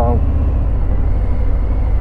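Harley-Davidson Fat Bob's Milwaukee-Eight 107 V-twin running steadily at road speed, with wind and road noise on the rider's microphone.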